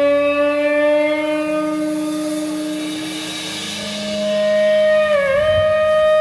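Electric guitar holding a long sustained note that slowly fades, then a higher sustained note starting about four seconds in, bent down and back up once near the end.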